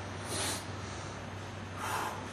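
Two short breaths, about a second and a half apart, over a low steady hum.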